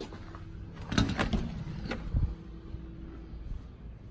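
Front door being unlocked and opened: a quick cluster of metallic lock and latch clicks about a second in, another click near two seconds, then a low thud as the door swings open.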